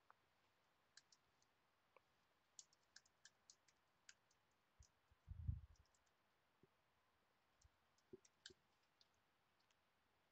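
Faint computer keyboard clicks as a password is typed, scattered over the first few seconds, with a soft low thump about halfway through and two more clicks near the end.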